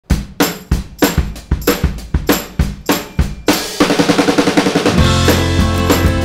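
Rock song intro: a drum kit plays a beat alone for about three and a half seconds, then pitched instruments come in and the full band is playing from about five seconds in.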